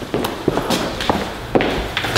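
Footsteps of people walking across a bare concrete floor: about five uneven steps and scuffs.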